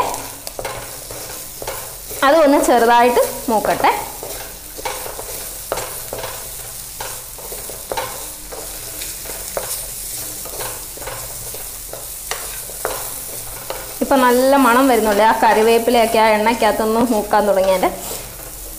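Dried fish, shallots and curry leaves sizzling in oil in a black pan while a wooden spatula stirs and scrapes them round. A louder wavering squeal rises over the frying briefly a couple of seconds in, and again for several seconds near the end.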